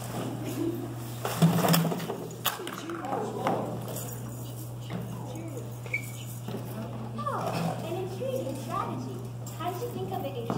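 Indistinct voices, with a few knocks and rustles in the first seconds, over a steady low electrical hum.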